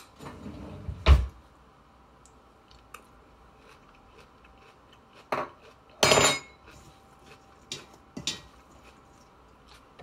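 Utensils clinking and scraping against a salad bowl, with one sharp knock about a second in. Then it goes mostly quiet, with scattered small clicks and a couple of louder clinks.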